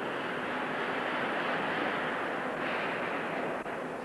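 Steady rushing noise of work in an aircraft hangar, without a clear pitch or beat, dropping off shortly before the end.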